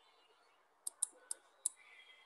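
Four sharp, faint computer clicks in the second half, a quarter to a third of a second apart.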